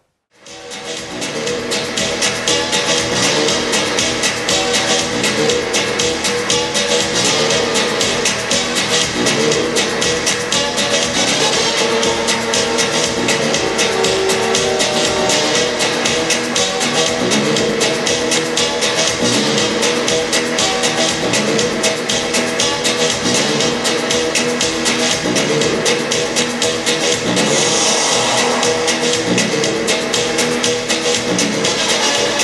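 Music with a steady beat, coming in about half a second in and rising to full level within two seconds.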